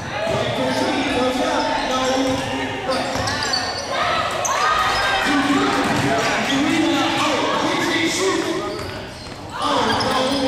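Basketball game sounds in a gym: the ball bouncing on the hardwood court, sneakers squeaking, and players and spectators shouting over one another, echoing in the hall.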